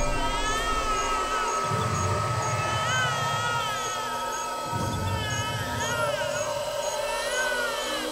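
Eerie horror soundtrack: a high, wavering, wail-like voice rising and falling over a steady high drone, with a faint tick about twice a second and deep rumbling swells about two seconds in and again near five seconds.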